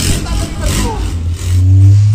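Deep, loud bass from a large outdoor sound system of stacked subwoofers, with a steady low note swelling about one and a half seconds in, and voices over it.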